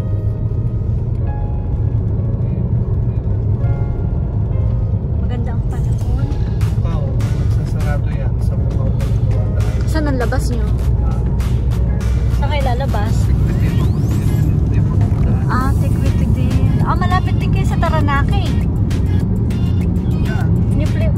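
Car interior road and engine drone, a steady low rumble, with music playing over it: held instrumental notes at first, then a wavering singing voice from about six seconds in.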